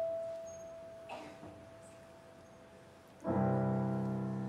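Piano playing a slow passage: a single note rings and fades for about three seconds, then a full chord with a low bass is struck and left to ring.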